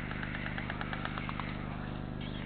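White stork bill-clattering: a rapid rattle of about ten clacks a second lasting just over a second, the display storks make when a mate or parent arrives at the nest. Underneath runs a steady low electrical hum.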